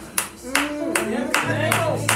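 Steady rhythmic hand clapping, about two to three claps a second, under a wordless wavering voice. A low held note from an instrument drops out, then comes back about a second and a half in.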